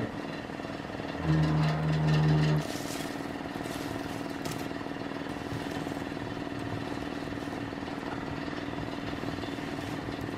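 Steady roar as a fire is lit in a small wood stove, sparks flying while it is poked with a metal rod. A louder low hum sounds for about a second just after the start.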